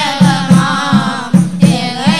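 Group of boys singing a Tamil Islamic devotional song together, with a tambourine keeping a steady rhythmic beat.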